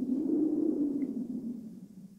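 Low, droning sound effect of an animated logo intro sting: it swells up just before the start, is loudest about half a second in, and fades away over the next second and a half.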